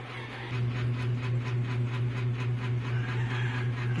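A steady low machine hum with a fast, even pulse above it, as from a motor running in the room.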